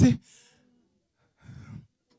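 A spoken phrase ends, then a faint, short breath on a microphone about a second and a half in.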